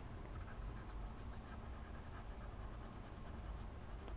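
Faint scratching of a pressed-paper blending stump rubbed over coloured-pencil wax on paper, pushing and blending the wax, over a low steady hum.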